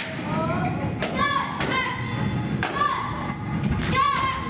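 Boards snapping under children's martial-arts kicks and strikes: several sharp cracks about a second apart, some with a short falling shout (kiai) from the breaker.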